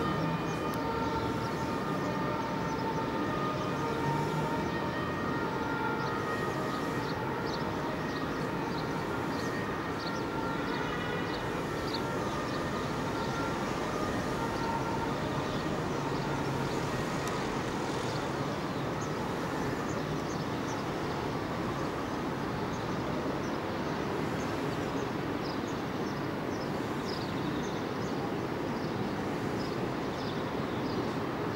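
Steady distant city din heard from high above the rooftops, a low even rumble of far-off traffic. Faint held tones sound through the first dozen seconds, and short high chirps are scattered throughout.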